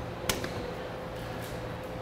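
A single sharp metallic click about a quarter of a second in, a fire-apparatus compartment door latch being opened, over a steady low hum of room tone.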